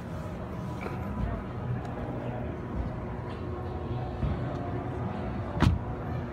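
Mercedes-Benz E400 coupe's door shutting once with a single solid thump near the end, over a steady background of exhibition-hall crowd voices and music.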